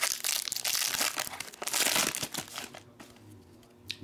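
Foil wrapper of a trading-card pack being torn open and crinkled by hand: dense crackling for about two and a half seconds, then quieter, with one small click near the end.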